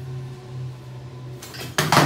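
Iron dumbbell plates clanking loudly, one sharp metal strike near the end with a brief ring, as a loaded dumbbell is handled on the floor.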